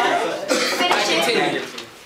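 Indistinct voices talking and chuckling, with a cough.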